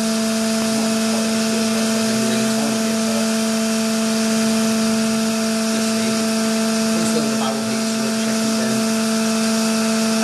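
1998 Boy 22 D injection moulding machine running with its hydraulic oil-warming circuit on: a steady machine hum with a few fixed tones that does not change.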